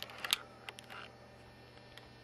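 A quick cluster of small clicks and rustles from handling the phone and camera, the sharpest about a third of a second in, then only a faint steady hum.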